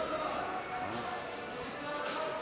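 Construction-site ambience: indistinct distant voices with a few knocks or thuds.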